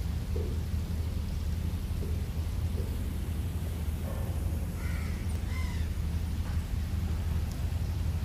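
Steady low rumble of wind on the microphone outdoors, with a couple of short faint bird calls about five seconds in.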